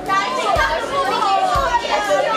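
Girls' excited voices, chattering and calling out, over upbeat background music with a kick drum beating about once a second.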